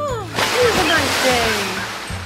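A loud rushing whoosh that starts about half a second in and fades near the end, with a pitched voice-like 'whoa' sliding down at the start.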